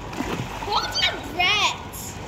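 Water splashing from a child swimming front crawl, with two short high-pitched calls from a child's voice about a second in.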